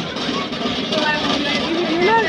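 Crowd chatter: a steady murmur of many voices with no one voice standing out.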